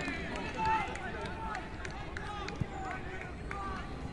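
Players' voices shouting and calling across an outdoor football pitch, many short overlapping calls with one louder call near the start.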